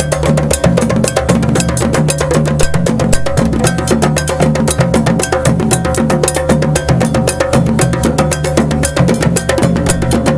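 West African drum ensemble: djembes played by hand in a fast, dense rhythm over dunun bass drums, with a metal bell ringing a steady repeating pattern on top.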